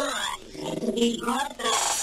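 A break in a hardtek track: the kick drum drops out and a sampled voice-like sound plays over sparse effects, then the pounding four-on-the-floor beat comes back in at the very end.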